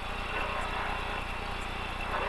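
Lada VFTS rally car's four-cylinder engine running steadily at speed, heard from inside the cabin.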